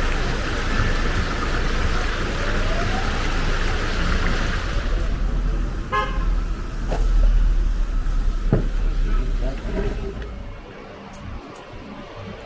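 A short vehicle horn toot about six seconds in, over a steady low rumble that fades near the end.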